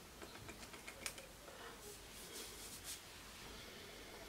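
Faint clicks from a small cologne sample spray vial being handled, then a few short soft hissing puffs around the middle as it is sprayed onto the skin.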